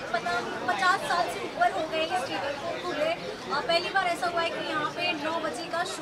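Several people talking over one another: steady background chatter of voices with no single clear speaker.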